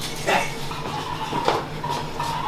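A man's short pained vocal sounds, two breathy bursts about a second apart, from the burn of an extremely hot chilli sauce in his mouth.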